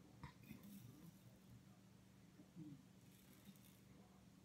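Near silence, with a few faint, short scrapes of a safety razor drawn across lathered stubble.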